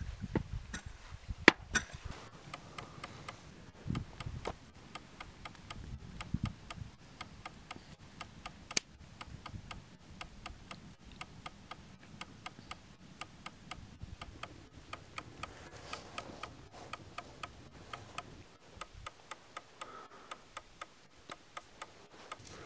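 Steady, evenly spaced clicking, about three clicks a second, with a few louder sharp knocks and dull thuds in the first seven seconds.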